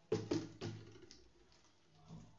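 Three quick, hollow, drum-like knocks in the first second, followed by a fainter one.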